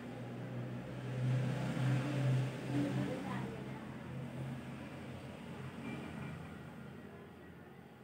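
A motor vehicle's engine passing, swelling about a second in and then slowly fading away.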